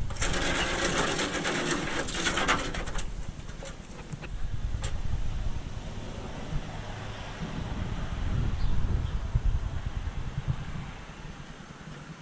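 Crinkly rustling of plastic sheeting and handling noise, loud for about the first three seconds, then a lower rumble with a few scattered clicks.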